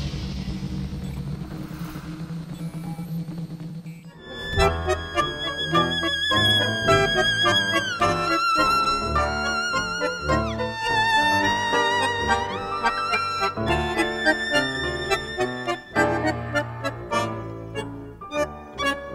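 Tango music played on piano and violin. After a soft, low opening, the full ensemble enters about four seconds in, with the violin holding long vibrato notes and sliding down in pitch twice over piano chords and bass.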